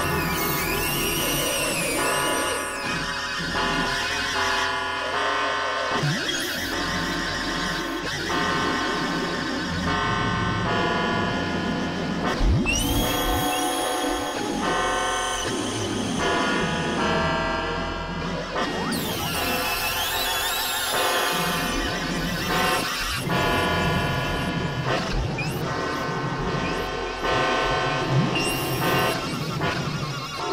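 Experimental electronic synthesizer music: dense, held chords of tones that shift every second or so over a steady low drone, with high gliding sweeps near the start, about halfway through and again a little later.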